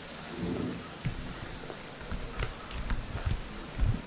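A hand mixing thick rava (semolina) batter in a stainless steel bowl: irregular soft thuds and squishing as the batter is worked after Eno and water have been added.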